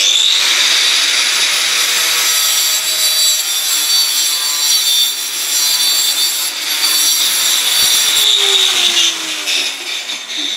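Angle grinder cutting through stainless steel expanded metal lath: a loud, steady high whine for about eight seconds. Near the end the disc is lifted off and the motor winds down with a falling pitch.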